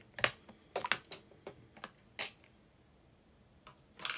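A series of light, irregular clicks and taps from small objects being handled by hand: several in quick succession over the first two seconds, then a pause and one more near the end.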